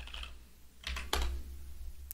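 Typing on a computer keyboard: a few keystrokes, the loudest pair about a second in, over a low steady hum.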